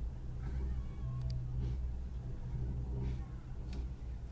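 Steady low rumble inside a moving cable car gondola as it runs along its cable, with a couple of faint short high-pitched squeaks and a few light clicks.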